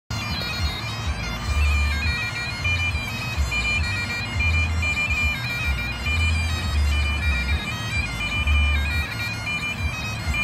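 Scottish bagpipes playing a tune, the chanter's melody stepping from note to note without a break.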